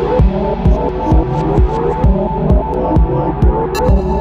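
Techno track: a steady four-on-the-floor kick drum about two beats a second under a looping, rising synth bass figure and a held synth tone. A bright high percussion hit comes in near the end.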